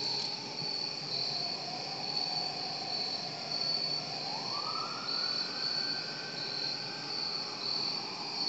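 Crickets chirping steadily under a faint siren wail whose pitch rises about four seconds in, holds, and fades near the end.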